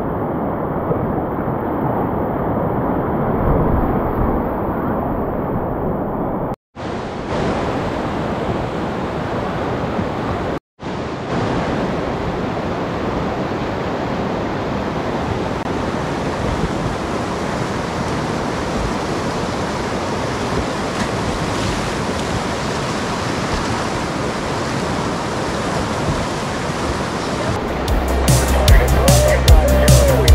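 Whitewater rapids rushing loudly and steadily, broken twice by a brief silent gap. Music with a heavy low beat comes in near the end.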